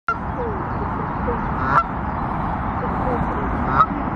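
Canada goose honking twice, short loud calls about two seconds apart, over steady outdoor background noise.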